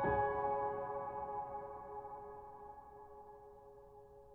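Solo piano: a chord struck at the very start and left to ring, its notes fading slowly away over several seconds.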